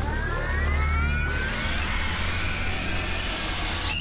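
Animated-film sound effects of a monstrous energy eruption: a deep steady rumble under rising whines and a rush of noise that swells and climbs in pitch over the few seconds.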